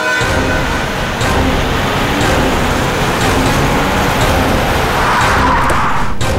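A car driving up on a paved drive, with engine and tyre noise that swells toward the end as it comes to a stop.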